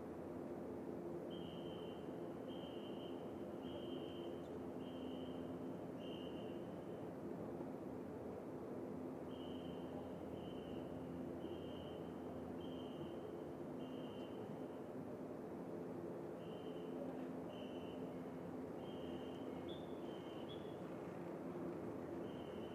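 A faint steady hum with a high-pitched note repeating about once a second, in three runs of five or six notes with short gaps between.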